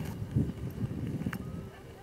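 Gusty wind buffeting the microphone in uneven low rumbles, with a large cloth flag flapping in it close by; the wind eases near the end.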